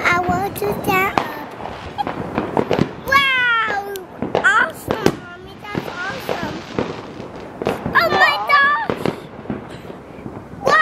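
Fireworks going off around the neighbourhood: scattered sharp pops and cracks, with a hiss lasting about a second near the middle and a toddler's voice over them.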